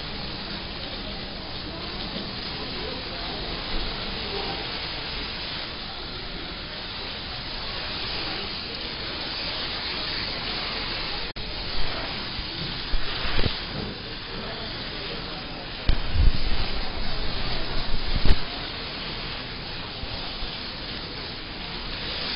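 Water hissing steadily from a salon backwash basin's spray as lathered hair is rinsed, with a few low bumps in the second half.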